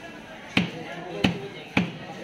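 Cleaver chopping through a large carp fillet into a wooden log chopping block: three sharp chops, the first about half a second in, then two more about half a second apart.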